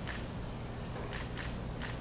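Ice knocking about four times inside a metal cocktail shaker tin as it is tipped to strain the drink into a glass of ice, over a steady low hum.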